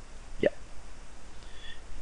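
A man's single short spoken "ya" about half a second in, over low steady room hiss.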